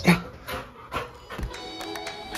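Dog up close to the microphone giving a loud cough-like huff, then a few panting, sniffing breaths. Background music comes in about three-quarters of the way through.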